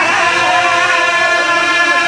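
Majlis recitation chanted by a man into microphones in long, held melodic lines, with other men's voices joining in.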